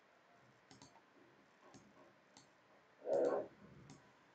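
Computer mouse clicking several times, some clicks in quick pairs. About three seconds in comes a short, louder hum-like sound from a person's voice.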